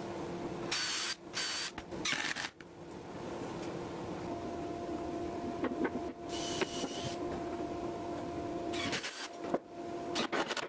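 Makita cordless drill driving screws into red oak shelf runners in short whining bursts: three quick bursts in the first few seconds, another past the middle and more near the end, over a steady low hum.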